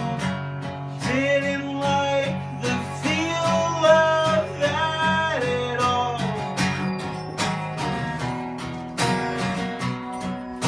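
Acoustic guitar strummed in a steady rhythm, with a voice singing long drawn-out notes over it from about a second in until about six seconds in, then the guitar alone.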